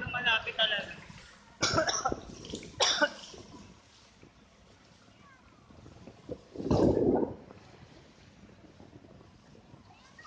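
Short bursts of people's voices on a boat in the first three seconds, then a single cough about seven seconds in, with only faint background hiss between.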